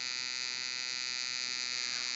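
Steady electrical hum with a high whining hiss over it, unchanging, during a pause in the singing.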